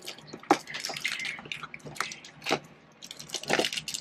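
Cardboard advent calendar being handled and its perforated doors pressed open: a scattered run of sharp clicks and crackles, the loudest about half a second, two and a half and three and a half seconds in.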